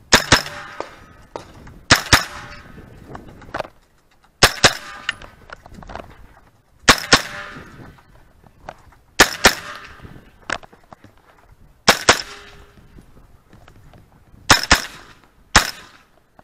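Just Right Carbine 9mm firing pairs of quick shots (double taps), a pair about every two to three seconds, with one last single shot near the end. Each shot is a sharp crack with a short echo.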